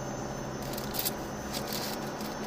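Car driving slowly along a sandy dirt track, heard from inside the cabin: a steady low engine hum under a noise of tyres on sand, with irregular crackling and scraping from about half a second in.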